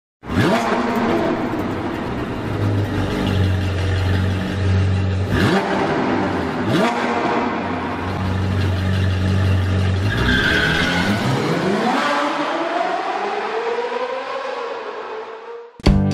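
Sports car engine sound effect: it runs steadily with a few sharp hits in the first seconds, then revs up in a long rising sweep from about ten seconds in and fades away.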